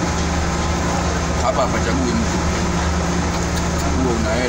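A steady low mechanical hum, with faint voices in the background.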